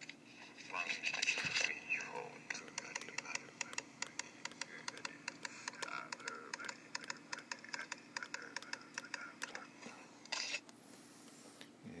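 A recording of quick, even tapping played back through a small voice recorder's speaker: a run of light ticks, about four or five a second, lasting some eight seconds, with a faint voice under them.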